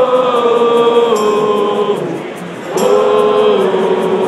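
Many voices of a crowd singing along in unison with an unamplified acoustic band. There are two long held sung phrases: the first steps down in pitch about a second in, and the second starts near three seconds in.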